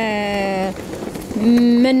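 A woman's voice holding a long, drawn-out vowel in hesitation, then a short pause of even hissing noise before she speaks again.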